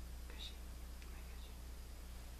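A brief, faint whisper about half a second in, with a few soft ticks after it, over a steady low hum.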